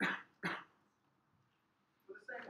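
Two sharp coughs about half a second apart, close to the microphone.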